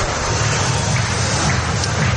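Stadium crowd noise at a cricket ground, a steady even din of spectators.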